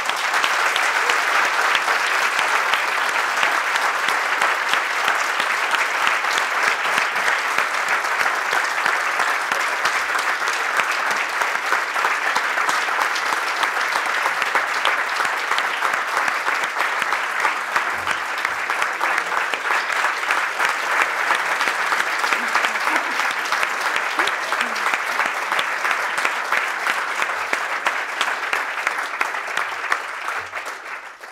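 Large audience applauding steadily, a dense, even clatter of many hands that starts abruptly and holds at the same level throughout.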